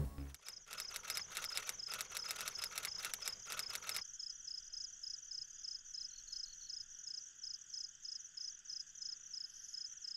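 Faint crickets chirping. For the first four seconds they make a dense, fast clicking; after that a single high chirp repeats steadily, about two or three times a second.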